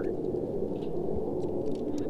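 A steady low rushing noise with no distinct events, only a few faint ticks over it.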